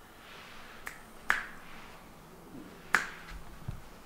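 Two sharp snapping clicks about one and a half seconds apart, with a few fainter clicks around them, from hands handling a wet sheet face mask and its packet.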